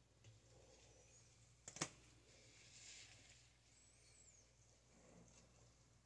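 Near silence, with faint rustling as bleach is worked through a mannequin head's hair with gloved hands and a tint brush, and one short, sharp click a little under two seconds in.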